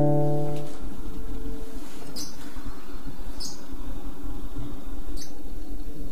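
A chord on a nylon-string classical guitar rings on and fades out within the first second. After that comes a steady low rumble, with three short high chirps about two, three and a half and five seconds in.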